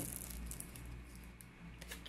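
Faint handling noises from a small cardboard perfume box being moved about in the hands, a few light rustles over quiet room tone.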